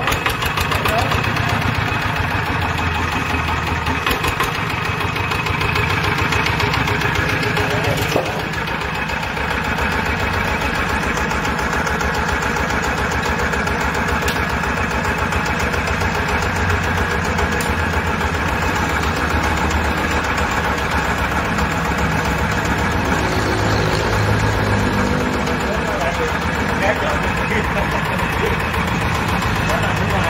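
Single-cylinder horizontal diesel engine running steadily, with an even train of firing pulses.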